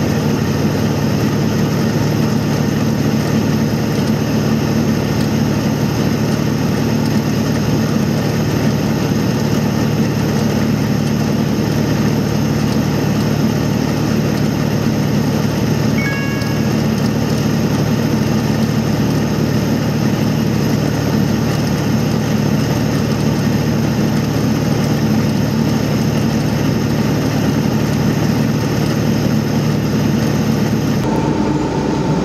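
Steady engine drone and road noise heard from inside the cab of a vehicle cruising at highway speed. About sixteen seconds in, a brief two-note electronic beep sounds, stepping down in pitch.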